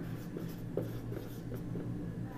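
Marker pen writing on a whiteboard: a run of short, faint strokes as letters are written.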